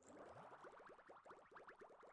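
Faint edited-in sound effect of quick rising bubbly blips, several a second, starting abruptly out of total silence.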